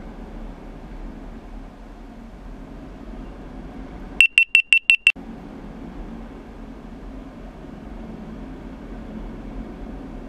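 Six rapid, loud, high-pitched electronic beeps in under a second, about four seconds in, over a steady low hum in a large hall.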